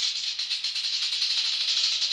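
Rattlesnake shaking its rattle: a steady, dry, high buzz made of very rapid clicks.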